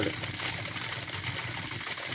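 Steady background noise: a low hum under an even hiss, with no separate events.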